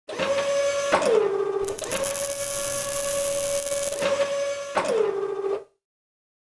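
Robotic mechanical sound effects: a steady pitched motor whir that winds down in pitch with a click about a second in and again near five seconds, with a hissing rush in the middle. It cuts off suddenly near the end.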